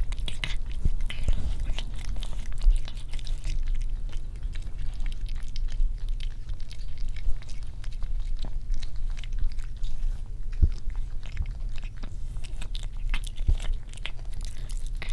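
A cat eating close to the microphone: many small irregular chewing and lapping clicks, over a steady low hum.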